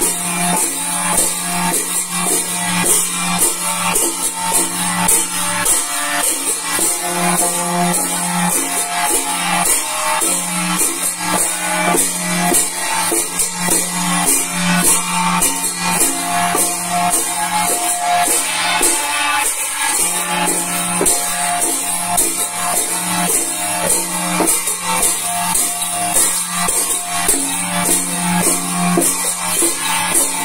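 Vietnamese chầu văn ritual music with a steady, driving beat, over bright metallic clanging of hand-held brass gongs struck in rhythm.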